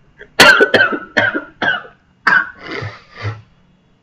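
A person coughing in a fit, about seven sharp coughs in quick succession, the first four the loudest and closest together.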